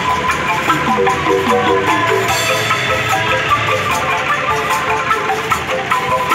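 Javanese street angklung ensemble playing a lively tune: shaken bamboo angklung and a mallet-struck xylophone sounding quick repeated notes over a drum beat.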